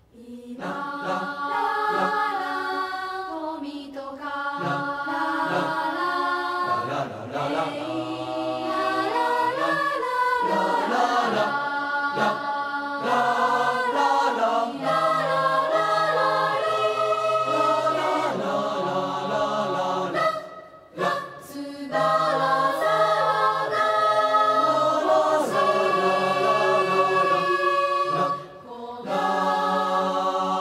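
Choir singing slow, sustained chords, entering right after a moment of silence, with two brief breaks between phrases later on.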